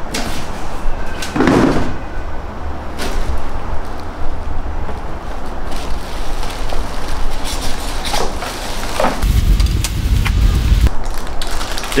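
Plastic wrapping rustling and crinkling, and a cardboard box being handled, as an espresso machine is unpacked. About nine seconds in there is a low rumbling scrape lasting a second and a half.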